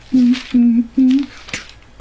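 A man humming a few short held notes, a lazy filler tune he calls elevator music.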